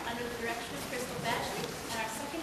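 Indistinct murmur of voices, people talking quietly with no clear words.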